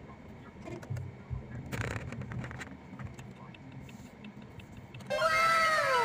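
Low road noise inside a moving car's cabin, with faint scattered clicks. About five seconds in, a louder string of overlapping tones starts, each sliding down in pitch.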